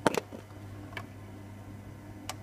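A sharp double click near the start and a fainter tick about a second in, over a steady low hum.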